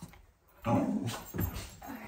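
A dog giving two short, noisy sounds, the first about half a second in and the second about a second later.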